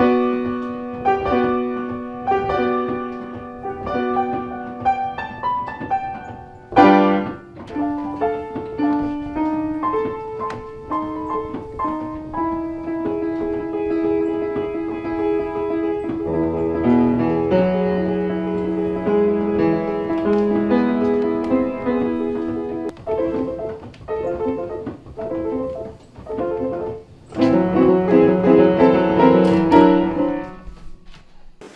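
Steinway Vertigrand reproducing piano playing by itself from a perforated paper roll, the mechanism working the keys to replay a pianist's recorded performance. It plays a piano piece of single notes and chords, with a loud chord about seven seconds in and a louder passage near the end.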